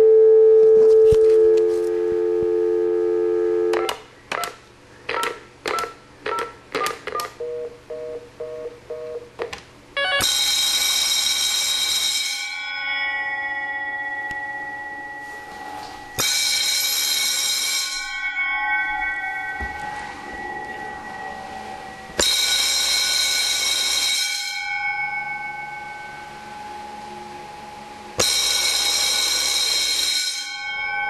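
A telephone dial tone, then a run of keypad beeps as a number is dialled. After that, electric fire bells wired to a Wheelock KS-16301 phone-ring relay ring loudly in bursts of about two seconds, four times about six seconds apart, following the telephone ring cycle, with each burst ringing on as it dies away.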